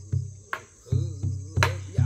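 Korean buk barrel drum accompanying traditional Korean singing (sori): deep strokes on the drumhead, about five in two seconds, with two sharp clicks of the stick on the wooden shell, under a man's voice holding a wavering note in the middle.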